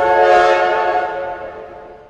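Cartoon steam-train whistle sound effect: one long held chord of whistle tones with a hiss over it, fading away toward the end.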